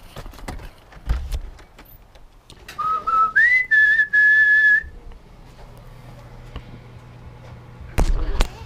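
A person whistling a short call: a brief low note, a quick upward sweep, then a longer steady higher note, about two seconds in all.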